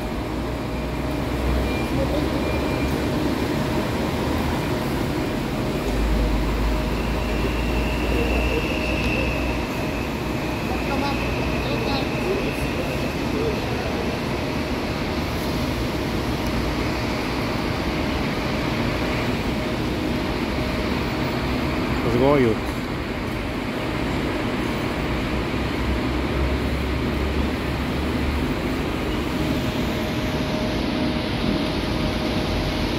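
Diesel coaches running and manoeuvring in and out of bus terminal bays, under a steady hiss of rain, with a low engine rumble that swells at times. A thin high whine comes in about seven seconds in, and a short warbling sound, the loudest moment, comes about two-thirds of the way through.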